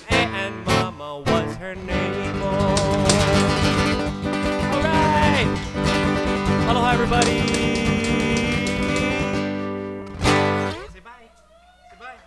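Acoustic guitar and voice ending a song: a few sharp strummed chords, then a long ringing chord under a held, wavering sung note, and one last strummed chord about ten seconds in that dies away.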